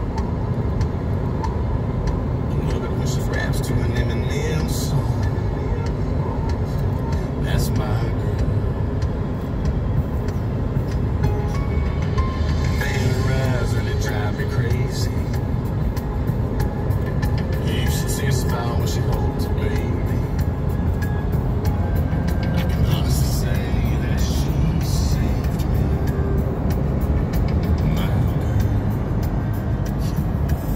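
Steady road and engine rumble inside a moving car at highway speed, with a song playing and a voice faintly over it.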